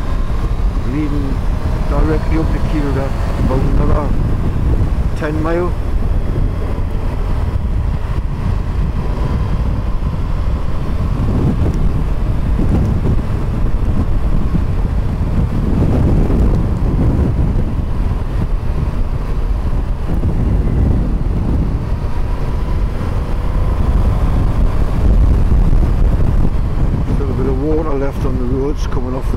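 Steady wind rush and buffeting on the microphone of a moving motorcycle, over its engine and tyre noise, with surges in the low rumble.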